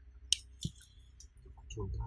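Metal clinks of a socket tool working the bolts on a Hyundai Grand i10 alternator's rear cover as it is unbolted for disassembly: one sharp click about a third of a second in, then a duller knock, over a low steady hum.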